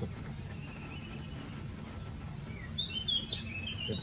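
Small birds chirping: a faint call early on, then a quick run of short, high chirps in the last second or so, over a steady low background rumble.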